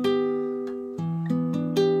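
Classical guitar playing a chord-solo passage: a chord is plucked and left ringing, with single notes picked over it, then a new chord with a new bass note about a second in.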